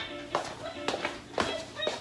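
Background music with four light taps about half a second apart: footsteps on the floor.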